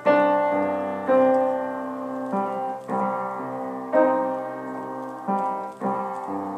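Solo piano improvisation in slow chords: a new chord is struck about once a second and left to ring and fade before the next.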